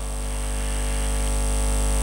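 Steady electrical mains hum with a stack of evenly spaced overtones from the microphone and PA sound system, slowly growing louder.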